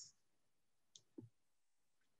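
Near silence, with one faint short click about a second in and a brief faint low blip just after it.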